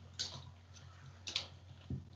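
Two faint, short clicks about a second apart over a low, steady electrical hum, typical of clicking on a computer while trying to change a presentation slide; a soft low thump near the end.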